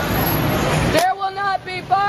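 Busy city street traffic noise for about a second, then a loud, high, repeating pattern of short notes alternating between two pitches takes over.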